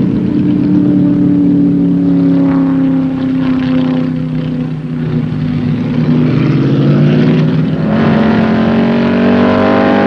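Race car's V8 engine running at speed on a test lap. Its pitch eases down over the first five seconds or so, then climbs again, with a sharp rise about eight seconds in.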